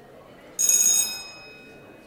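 A single bright, high bell-like ring that starts suddenly, is loud for about half a second and then dies away, over a low murmur of voices in a large room.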